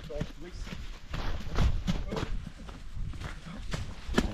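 Quick footsteps on a muddy dirt trail, about three steps a second.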